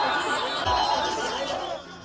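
A crowd of many people shouting at once in a scuffle, their voices overlapping, cutting off shortly before the end.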